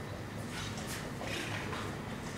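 A few soft footsteps and scuffs on a carpeted floor over a steady low hum.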